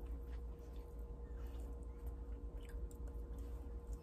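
Faint chewing of blueberries with a few soft, scattered mouth clicks, over a steady low hum.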